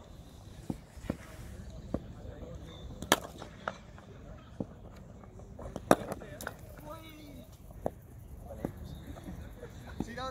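Cricket balls being struck by bats at net practice: about a dozen sharp, irregular cracks, the two loudest about three and six seconds in.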